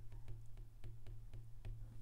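Stylus tapping and sliding on a tablet's glass screen while a word is handwritten: a string of light, irregular ticks, about eight, over a faint steady low hum.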